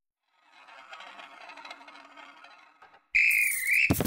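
A faint rattling stir, then about three seconds in a sudden loud, warbling whistle blast like a drum major calling a marching band to attention. Right after it comes a rapid clatter of coins flipping up onto their edges on a wooden tabletop.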